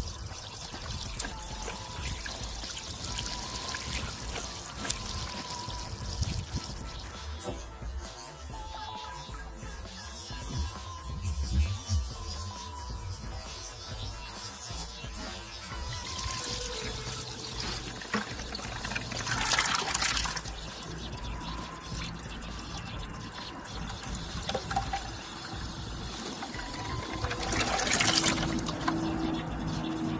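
Flush water and antifreeze running steadily from a hose into a partly filled bucket as a clogged heater core is backflushed, with a couple of louder surges of flow. Light background music plays over it.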